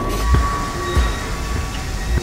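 Freight train of tank cars rolling along the track: a steady rumble of wheels on rail with a low clunk about every two-thirds of a second, and a faint steady high ring above it.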